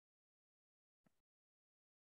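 Near silence: the audio track is essentially empty, with no audible sound.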